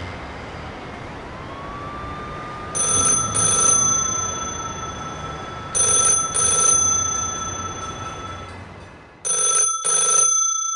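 Telephone ringing in double rings, three pairs about three seconds apart, over steady background hum. A faint siren glides up and down in the first few seconds.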